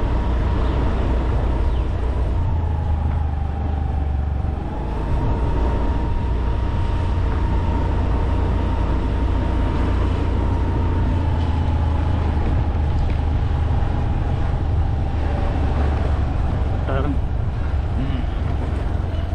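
A vehicle travelling along a street, heard as a steady low rumble with a single motor whine on top. The whine dips briefly about four seconds in, comes back up, then slowly falls as the speed changes.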